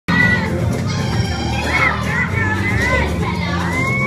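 Children shouting and cheering over music for a dance routine, with a steady low beat underneath; one long high call starts near the end.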